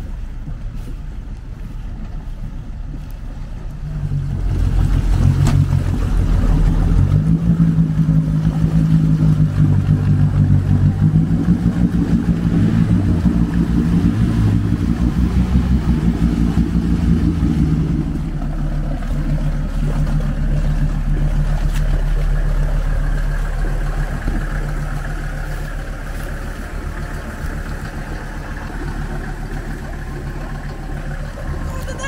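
Off-road 4x4's engine revving hard under load in deep mud and water, its pitch rising and falling, from about four seconds in. For roughly the last third it drops back to a quieter, steady run.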